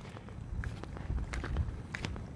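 Footsteps of a person walking over exposed reef rock, heard as faint, irregular light steps and ticks over a low background rumble.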